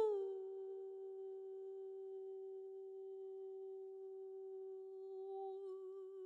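A single faint hummed note, held very steady in pitch after sliding down onto it at the start, with a slight waver near the end.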